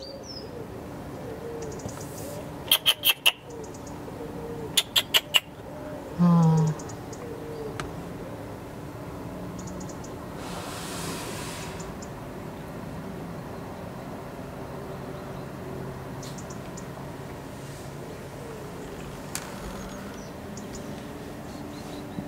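Outdoor garden ambience with faint, scattered bird chirps. Early on come two quick runs of about four sharp clicks each, followed by a brief low hum.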